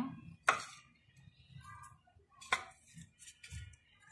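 Two sharp knocks of a utensil against a metal cooking pot, about two seconds apart, each with a short ring.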